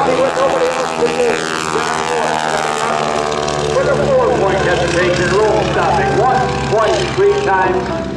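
Stearman biplane's radial engine and propeller running hard through an aerobatic manoeuvre. About a second in, its note slides steadily down in pitch over about two seconds as the plane passes. A voice over the public address is heard in the second half.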